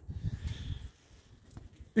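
Faint low rumble of a handheld phone being moved and steps on paving for about the first second, then near quiet with a soft click.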